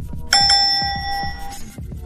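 A bright chime sound effect rings out about a third of a second in and fades over about a second, over background music with a steady beat.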